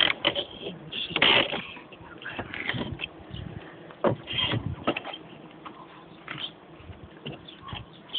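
Hands working on a bee colony's transport box, which is being unscrewed and opened: irregular knocks and scrapes, with the loudest clatter about a second in.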